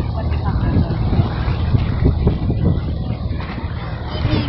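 Steady low rumble and noise out on open water, with voices faintly underneath.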